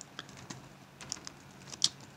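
Typing on a computer keyboard: a handful of scattered keystrokes, a few close together around the middle and one sharper click near the end.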